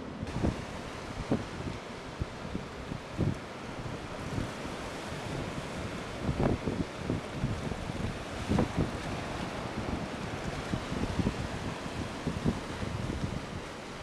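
Ocean surf breaking and washing in, with wind gusting on the microphone in irregular low buffets throughout.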